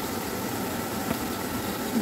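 Steady hiss of a pot heating on a gas hob for a butter-based white sauce, with a faint steady whine and a few small ticks.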